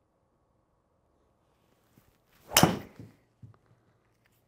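A golf driver striking a ball off an indoor hitting mat: one sharp crack about two and a half seconds in, followed by a few faint taps. The impact screen itself makes little noise when the ball hits it.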